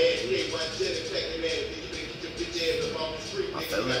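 Rap music playing, with a man's rapping voice over the beat and no break.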